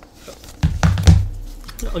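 Scissors cutting into a paper envelope on a stone countertop. A run of low thumps and sharp clicks comes about half a second in, loudest around one second, as the paper and scissors are handled close to the microphone.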